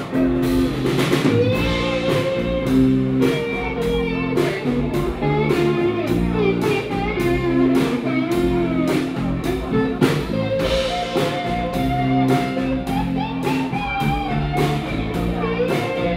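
A live band playing an instrumental break with no singing: guitar lead lines over sustained guitar chords, with a drum kit keeping a steady beat.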